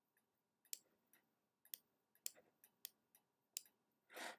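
Near silence broken by about five faint, sharp clicks, spaced roughly half a second to a second apart, from working at a computer.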